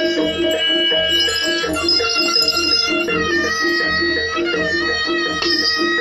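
Live East Javanese barongan music: a sustained melody line over a steady, repeating pattern of pitched percussion strokes about three a second and a low drum beat about once a second.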